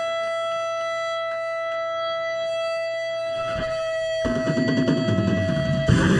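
Electric guitar feedback held as one steady high tone between songs of a live hardcore punk set. Heavier low instrument sound enters about four seconds in, and the full band comes in at the end.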